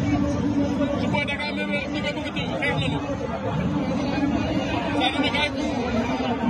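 Large stadium crowd talking and calling out all at once, a dense babble of many voices, with a few louder voices standing out now and then.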